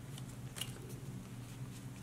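Faint handling of trading cards and a foil booster-pack wrapper: a few soft clicks and rustles over a steady low hum.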